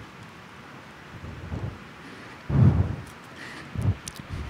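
A few low, muffled thumps on a microphone over a steady faint hiss: one about a second and a half in, the loudest about two and a half seconds in, and a smaller one near the end.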